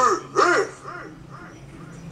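A rapper's voice from the music track, the last words echoing and fading away over about a second, leaving only a low steady hum.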